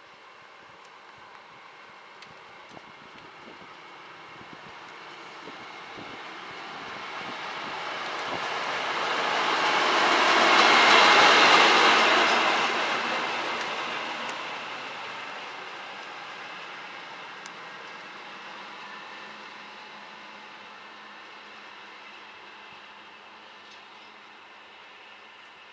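A train passing by, growing louder as it approaches, loudest about eleven seconds in, then fading as it moves away.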